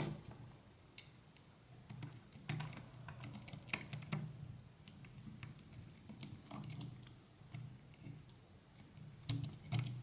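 Faint, irregular small clicks and taps of an M3 bolt and hand tool against a 3D-printed plastic extruder body as its stepper motor is being bolted on.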